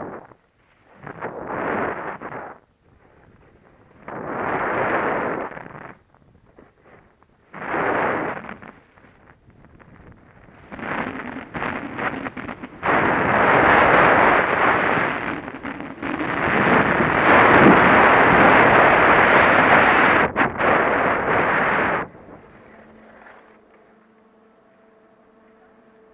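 Skis scraping and hissing over packed snow through a few separate turns, then a long stretch of louder rushing noise as the skier runs faster downhill, wind buffeting the helmet-mounted microphone. The rush cuts off suddenly as the skier slows, leaving only faint background noise.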